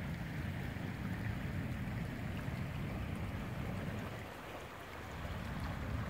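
The swift, muddy Gila River, running high after rain, makes a steady rushing flow with a low rumble underneath. It dips a little about four seconds in.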